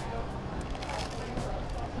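Low background hubbub of a street-side café: faint voices and street noise, with a few faint clicks.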